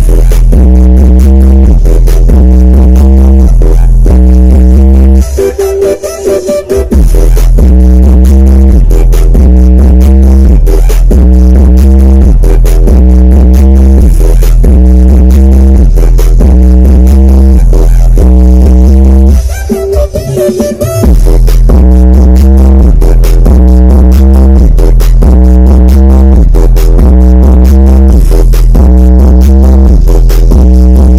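Very loud electronic dance music from a DJ set played through a large concert sound system, driven by a heavy, pulsing bass pattern. The bass drops out briefly twice, about five seconds in and again around twenty seconds in, before coming back.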